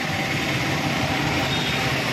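Steady street traffic noise: a continuous low rumble of passing vehicles, with no distinct knocks or clanks.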